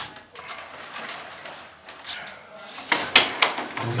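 Scraping and rattling of electrical cables being pulled and worked along an old plaster wall. It is irregular, with a burst of sharp scrapes about three seconds in, the loudest part.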